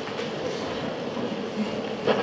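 Steady background noise of a large hall: a constant hiss with a faint hum and no clear events.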